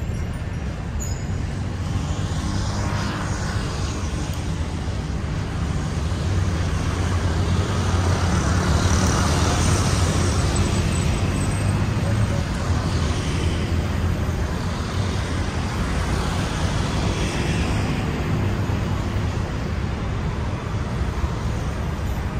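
Steady rumble of road traffic passing, growing louder for a few seconds around the middle.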